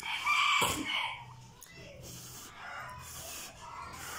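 A rooster crows once, about a second long, at the start; it is the loudest sound. Softer noisy slurping of noodles follows.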